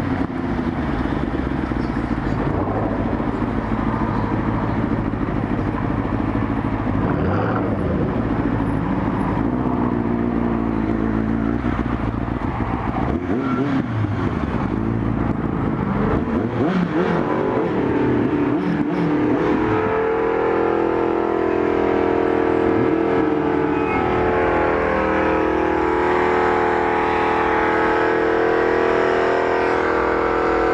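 Motorcycle engine running at low speed, its pitch rising and falling with the throttle, over road and wind noise. About two-thirds of the way in, a steady held engine note takes over and grows slightly louder.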